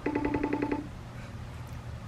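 FaceTime outgoing-call ringing tone on an iPhone while the call is connecting: one quick warbling trill of about eight beeps lasting under a second, heard through the phone's speaker.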